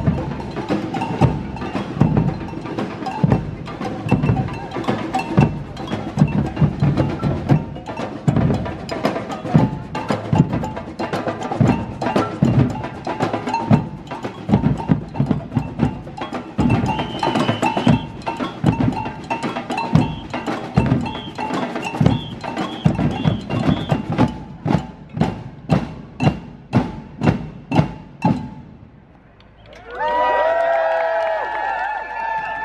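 Street samba-style drum band playing together: snare and bass drums with bells in a busy rhythm. Near the end it closes with a run of single hits, about two a second, then stops.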